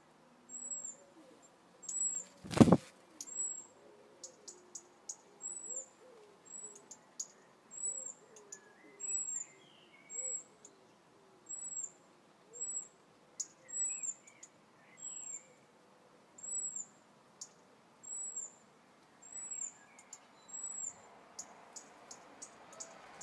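European robin giving a repeated high, thin alarm call, about once a second, while guarding its nest of chicks. A loud knock comes about two and a half seconds in, and faint low hooting runs in the background.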